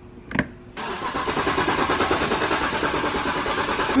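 A short click, then the BMW's 4.8-litre V8 is turned over to start, a steady pulsing engine sound that sets in under a second in and holds an even level for about three seconds.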